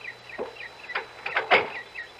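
Radio-drama sound effect of a cocktail being mixed: a few separate clinks and knocks of ice and glass, the loudest about one and a half seconds in.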